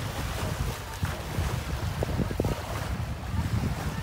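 Wind buffeting the microphone over choppy sea waves washing onto the shore, with a few short knocks about halfway through.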